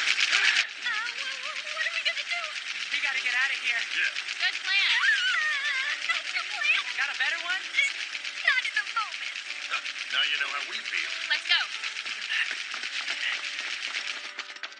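Voices crying out without clear words, over a dense bed of battle sound effects. A loud burst of noise comes right at the start.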